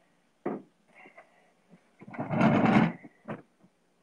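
A wooden chair pulled out from a table and sat in: a knock, then about a second of the chair legs scraping, then a short click.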